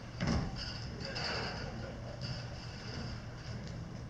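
A single dull thump about a third of a second in, an actor falling onto the wooden stage floor, followed by faint stage noise in the hall.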